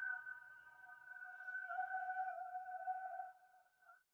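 Faint meditation background music: a single held, steady note that fades out about three seconds in.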